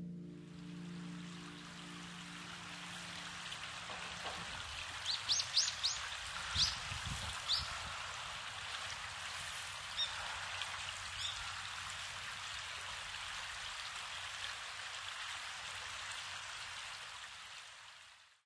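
River water flowing, a steady rushing hiss, with a few short high bird chirps: a quick run of them about five seconds in and single ones up to about eleven seconds in. The sound fades away at the very end.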